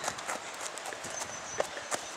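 Footsteps of a person running over grass, heard as a few scattered soft thuds.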